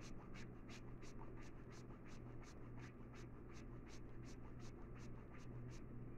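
A bar of soap being grated on a metal hand grater: faint, even rasping strokes, about three to four a second.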